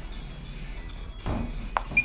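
A thrust is delivered with a sensor-fitted practice dagger: a rush of noise and a couple of sharp knocks, then near the end a short high-pitched electronic tone, the software's signal for a detected thrust. Music plays underneath.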